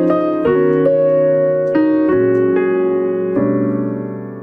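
Piano playing slow, sustained chords at the opening of a recorded pop ballad, the chords changing about once a second.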